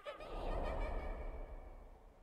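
A man's breathy, half-laughing sob into his hand, swelling early and fading out toward the end.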